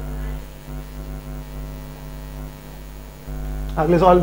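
Steady electrical mains hum, a low continuous drone, with a man's voice starting just at the end.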